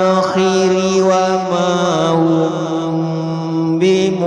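A single voice reciting the Quran in melodic chant, holding long drawn-out notes with small ornamental turns; the pitch steps down about halfway through.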